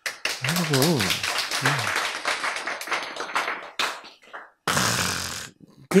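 Applause: a dense, irregular patter of hand claps with a voice briefly calling out over it, dying away about four seconds in. A short hiss follows near the end.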